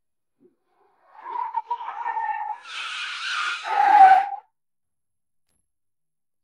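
Car tyres squealing as a car brakes hard and skids to a stop: a wavering squeal joined by a rush of skidding noise, loudest about four seconds in, then cut off suddenly.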